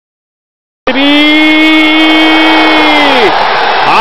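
Silence, then about a second in a television commentator's long held goal shout on one steady note for about two and a half seconds, dropping off at the end, over stadium crowd noise.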